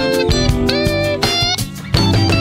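Instrumental soul-jazz/funk band playing: a guitar line with held and bent notes over drums, bass, keyboards and percussion. The band drops back briefly near the end, then a sharp hit lands.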